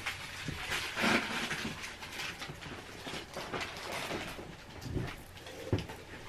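Scattered rustling and light knocks from a person moving about a small room and handling things, throwing something into a trash can.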